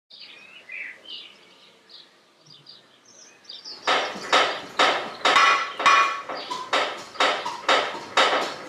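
Faint chirping, then from about four seconds in a run of sharp, ringing metallic strikes, about two a second, like hammer blows on metal.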